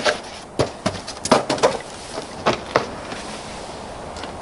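Footsteps on a paved driveway: a quick, uneven run of scuffs and taps in the first three seconds, then only steady outdoor background.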